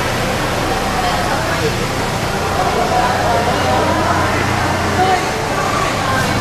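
People's voices talking and calling out over the steady low hum of a BMW 3 Series sedan's engine as the car moves slowly through an underground car park.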